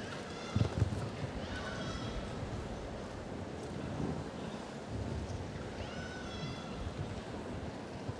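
A show-jumping horse cantering on arena sand, its hooves landing as dull thuds, over a steady murmur from a large crowd. Twice, about two and six seconds in, a brief high call with several tones rises above it.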